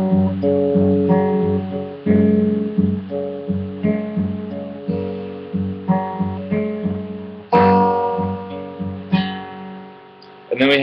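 Acoustic guitar fingerpicked very slowly, single plucked notes rocking between thumb bass notes and middle-finger treble notes, each left to ring and fade, with louder chords about seven and a half and nine seconds in.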